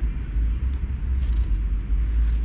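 Wind buffeting the microphone outdoors: a loud, uneven low rumble with no clear pitch.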